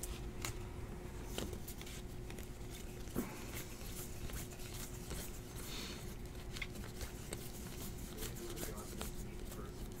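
Baseball trading cards being flipped through by hand, one card slid behind another, making a run of light, irregular flicks and clicks, the sharpest about three seconds in. A faint steady hum sits under it.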